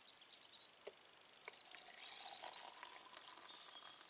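A small songbird singing a quick descending trill, loudest near the middle. Under it come a few light clicks and clinks of a metal mess tin being lifted and tilted to pour coffee.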